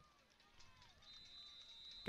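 Near silence in a stadium broadcast, with faint distant voices. About halfway through, a thin, steady high whistle tone begins and holds: a referee's whistle blowing the play dead after the tackle.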